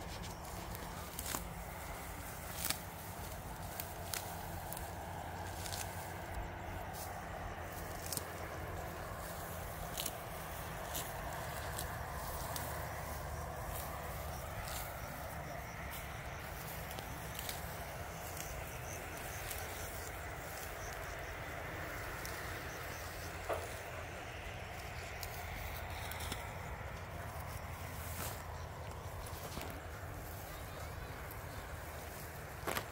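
Weeds being pulled up by hand: scattered rustles and sharp clicks of plants being torn and handled, over a steady outdoor hum.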